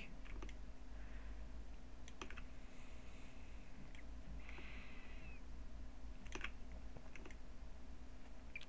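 A few scattered, faint computer mouse clicks and key presses (the control key) as anchor points on a path are clicked and moved, over a low steady hum.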